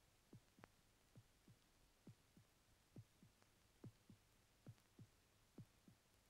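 Faint heartbeat sound effect on a film soundtrack: soft paired thumps, lub-dub, repeating a little under once a second.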